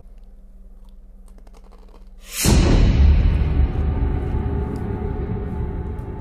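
Faint crunches of a tortilla chip being chewed for about two seconds. Then a sudden downward whoosh opens a loud, sustained low scary-music sting that runs on.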